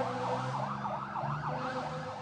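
Fire engine siren in fast yelp mode, its pitch sweeping up and down about four times a second over a steady lower tone, fading near the end.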